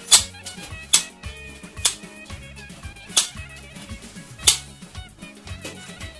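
Spring-loaded handheld needle meat tenderizer pressed into a piece of raw beef, giving five sharp clicks about a second apart, over quiet background music.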